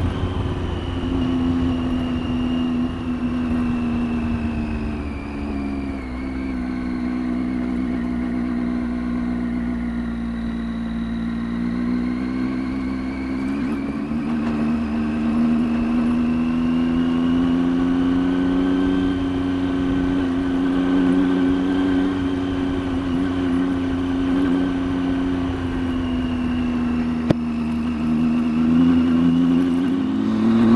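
Triumph Tiger 800 XCx's three-cylinder engine running under way on a dirt road. Its note sinks in the first third, climbs again past the middle and holds fairly steady over a low rumble. There is one short click near the end.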